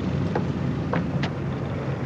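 Military jeep engine idling with a steady low hum, with a few light footsteps over it.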